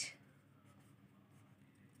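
Faint scratching of a pen writing on lined notebook paper.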